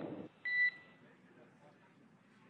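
A short electronic beep about half a second in: a two-tone radio communication beep, heard as a crew radio transmission ends. It is followed by a faint hiss on the line.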